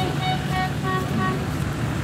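Off-road 4x4's engine running steadily out of sight while it works at a muddy dirt bank.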